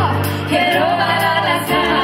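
Band music: a singer's melody wavering and gliding over a steady sustained accompaniment, which changes chord near the end.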